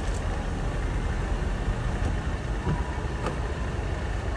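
Steady low rumble of idling cars with general outdoor noise, and a faint brief voice about three seconds in.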